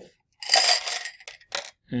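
A handful of dice poured out of a container, clattering onto the pan of an electronic balance in a short rattle about half a second long, then a click or two as they settle.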